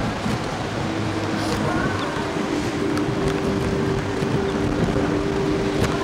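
Wind rushing over the microphone of a Slingshot reverse-bungee ride capsule in motion. From about a second in, a steady low two-note hum runs under it.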